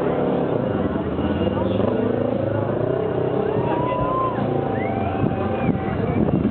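Motorcycle engine revving during stunt riding, its pitch rising and falling as the throttle is worked to hold the bike on one wheel.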